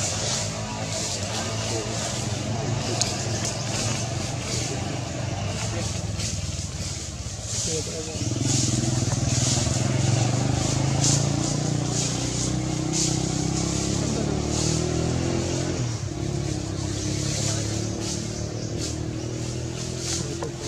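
A motor vehicle's engine running steadily in the background, growing louder about eight seconds in, with short high chirps over it.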